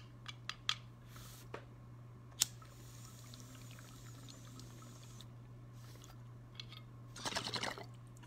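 Water gurgling in a bong as smoke is drawn through it, a short burst about seven seconds in. Before it there are a few light clicks, and a steady low hum runs underneath.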